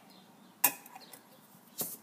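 Two short, sharp knocks about a second apart, the first louder: glass candle jars being moved and set down on a tabletop by hand.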